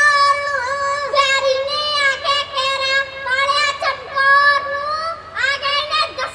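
Boys' high voices reciting a Punjabi poem in a loud chanted sing-song through stage microphones, holding long steady notes with short breaks between phrases.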